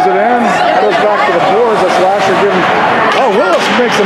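Mostly speech: voices talking throughout, with faint light clicks, likely from the hockey play on the ice, behind them.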